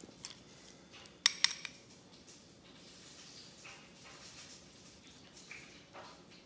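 A metal utensil clinking against a ceramic bowl while guacamole is scooped out. There is a quick run of three sharp clinks a little over a second in, and only faint handling sounds after it.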